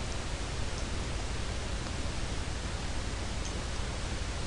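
Steady hiss of the microphone's background noise with a low hum beneath it; no speech.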